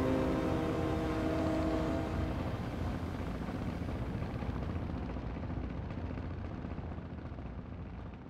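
A held chord from the soundtrack music ends about two seconds in, leaving a low, steady rumble that slowly fades out.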